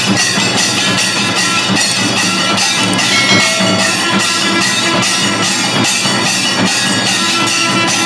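Kailaya vathiyam temple percussion ensemble: large brass hand cymbals clashing in a fast, steady beat over stick-beaten barrel drums, the cymbals' metallic ringing carrying on between strikes.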